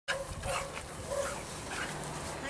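Dogs barking faintly, a few short barks spread out over two seconds.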